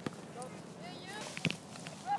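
Faint, distant calls of children on a football pitch, with a sharp knock about one and a half seconds in as a football is kicked.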